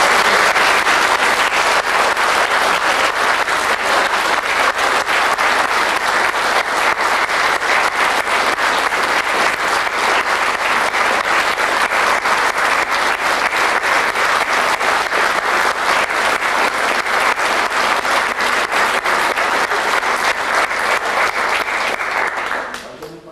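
Sustained, steady applause from a theatre audience and from the costumed performers on stage, many hands clapping at once.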